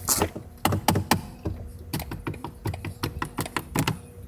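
A rapid, irregular series of clicks from a BMW M4's centre-console controls being pressed and turned by hand.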